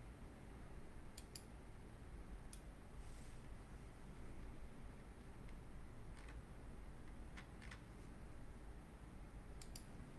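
Near silence: a low steady room hum with a few faint, scattered clicks, some in quick pairs.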